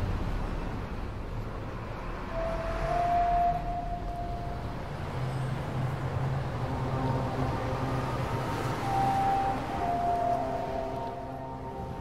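Low, steady rumble of distant city traffic, with long held tones over it: one from about two seconds in, then several held notes together in the second half.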